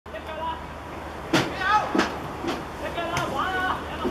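Football players shouting to each other across the pitch, with three sharp thuds of the ball being kicked or headed. The two loudest come a little over a second in and at two seconds, and a fainter one just after three seconds.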